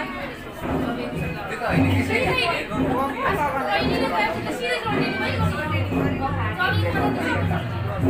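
Several people talking at once, with music playing under them: a song with a steady low beat.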